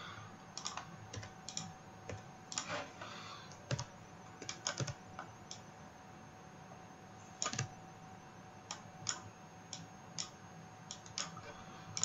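Faint, irregular clicks and taps of a computer keyboard and mouse, coming singly or in small clusters with short gaps, over a faint steady hum.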